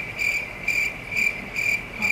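Cricket chirping sound effect: a steady high chirp repeating about twice a second.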